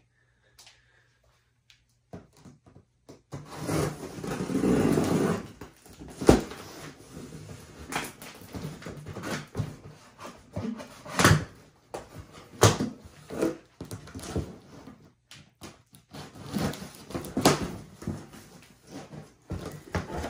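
A large cardboard shipping box being opened by hand: a knife slitting the packing tape, cardboard rustling and scraping, and a scatter of sharp knocks and taps as the flaps are worked. The sounds begin about two seconds in.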